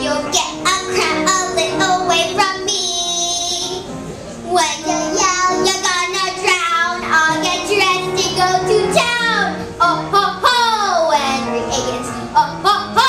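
A young girl singing a show tune with musical accompaniment, her voice gliding through sustained and falling notes.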